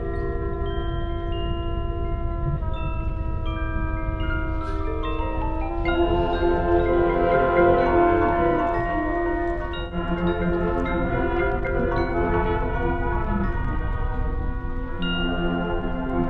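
Marching band front ensemble playing a slow passage on mallet percussion (marimbas, vibraphones and glockenspiel), with long ringing notes that move in steps and swell into a fuller chord about six seconds in. A steady low rumble runs underneath.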